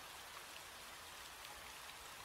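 Faint, steady rain: a rain ambience sample opening a lo-fi track before the beat comes in.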